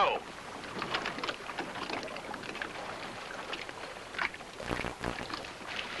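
Water splashing and lapping around outrigger canoes, with scattered small splashes and faint voices, under the hiss of an old film soundtrack.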